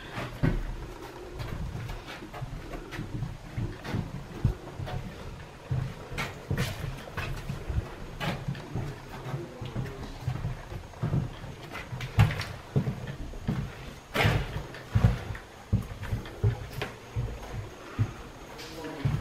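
Footsteps and shuffling on a bare floor mixed with camera handling knocks: irregular low thumps and clicks throughout, with a louder cluster of knocks about twelve to fifteen seconds in.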